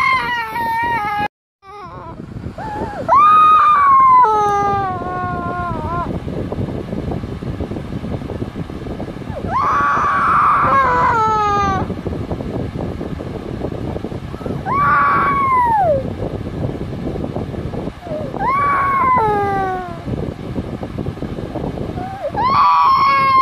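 A toddler crying: a series of high wails a few seconds apart, each falling in pitch, with sobbing between them.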